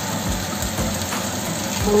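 Steady sizzle of sliced onions and potatoes frying in a stainless steel pan as a thin stream of cooking oil is poured in.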